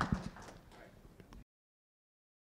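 Applause dying away to a few scattered claps, then the sound cuts off abruptly about a second and a half in.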